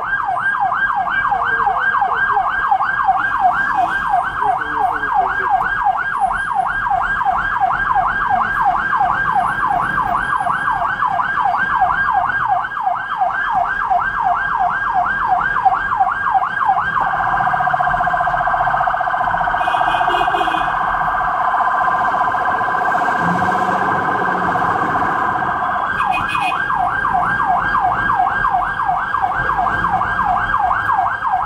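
Ambulance's electronic siren heard from inside the cab, running in a yelp of about three rising sweeps a second. About halfway through it switches to a much faster warble, then goes back to the yelp near the end.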